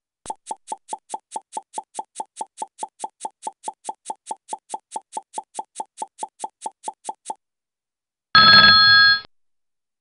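A quiz countdown-timer sound effect: quick even ticks, about five a second, for some seven seconds. About a second later comes a short, louder signal with several steady pitches, lasting about a second, marking that the answer time is up.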